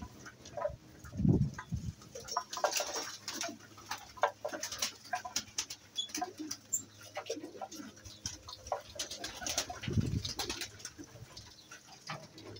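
Domestic pigeons cooing low, once about a second in and again near the end, with light scattered clicks and rustles in between.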